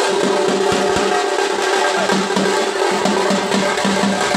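Several carried drums played together in a fast, continuous rhythm, with a steady pitched tone sounding beneath the beats.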